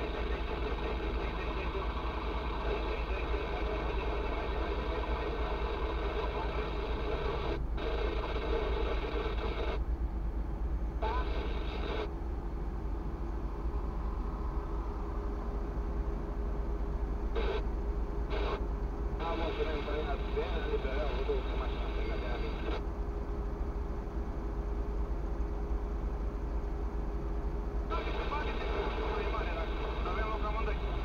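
Indistinct talk, like a car radio, playing inside a stationary car's cabin and cutting in and out abruptly, over a steady low rumble.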